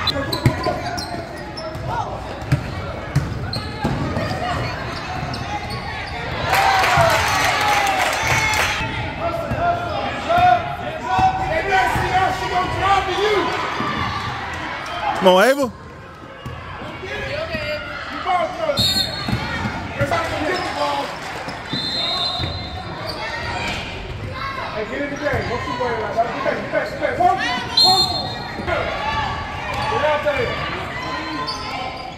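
Basketball dribbled and bouncing on a hardwood gym floor amid the running of a game, with brief high squeaks and indistinct shouting voices echoing in a large gym hall. The sound breaks off sharply for a moment about halfway through.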